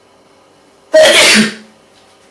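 A person sneezing once, loud and sudden, about a second in.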